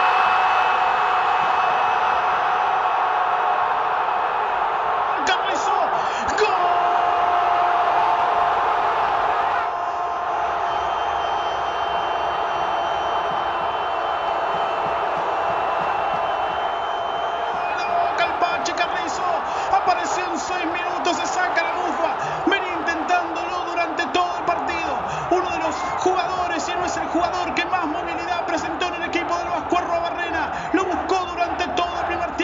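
Football stadium crowd roaring at a home goal, the roar loudest in the first ten seconds and then settling a little. From about 18 seconds in, the crowd sings and chants, with many sharp beats running through it.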